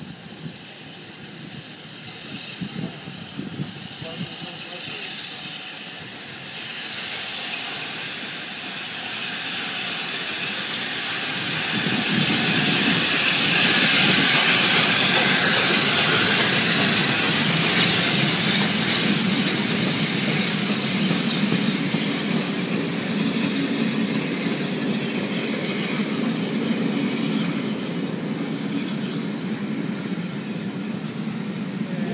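Streamlined LNER A4 Pacific steam locomotive passing through the station, growing louder over several seconds and loudest about halfway through as the engine goes by with a hissing rush of steam. Its carriages then follow with a steady rumble and clatter over the rails.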